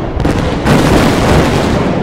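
Explosion sound effect: a loud, deep boom with a long rumble that swells again under a second in and begins to fade near the end.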